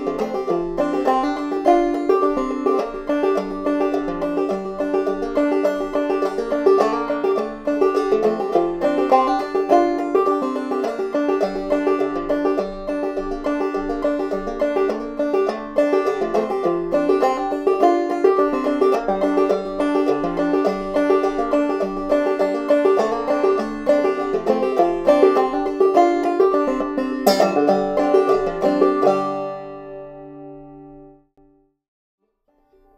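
Banjo played clawhammer style, struck with a very short bare fingernail instead of a pick, in an unprocessed recording: a steady old-time tune. The playing stops just before the end and the last notes ring out and fade.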